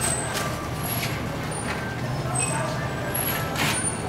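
Busy street-alley ambience: a steady engine rumble from passing motor traffic under people's voices talking, with scattered clicks and knocks.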